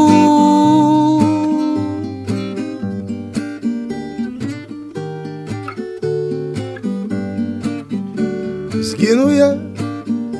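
A man's long held sung note dies away about two seconds in. An acoustic guitar then plays a strummed and picked interlude of changing chords.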